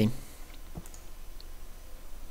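A single computer mouse click against a faint steady background hum.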